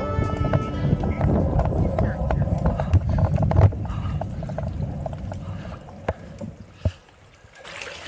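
Background music fading out over several seconds. Near the end, water starts trickling from the spouts of a stone fountain trough.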